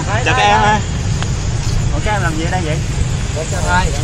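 People talking over a steady low rumble of city street noise.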